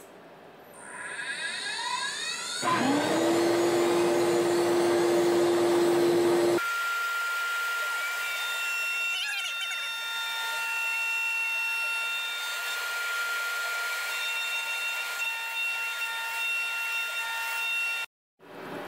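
CNC router spindle spinning up with a rising whine, joined about three seconds in by a shop vacuum switching on and running with a steady hum. From about six and a half seconds the spindle runs at speed with a steady high whine, cutting wood while the vacuum nozzle beside the bit draws chips away.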